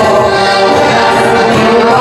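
A live village folk band (kapela podwórkowa) with an accordion playing loud, steady dance music.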